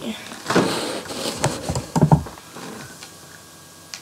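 Fabric rustling and bumping right against the webcam's microphone as the camera is handled, with a few soft knocks about two seconds in.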